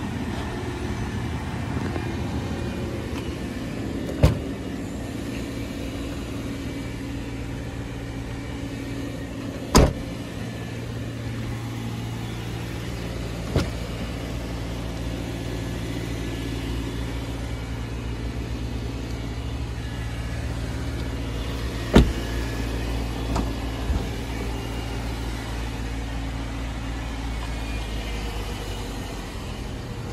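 Subaru Crosstrek's flat-four engine idling steadily, with a few sharp knocks of its doors being handled, the loudest about 10 and 22 seconds in.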